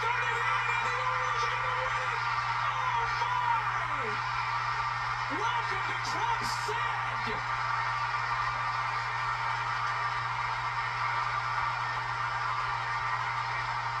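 Ballpark crowd cheering and whooping a walk-off win, with music playing, heard through a TV broadcast recorded off the screen's speaker, and a commentator's brief "Oh, my."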